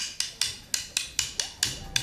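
Sharp percussion clicks tapping a quick, slightly uneven rhythm of about four to five strokes a second.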